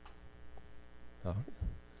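Steady electrical mains hum with a stack of harmonics, under a brief spoken "ah" in the second half.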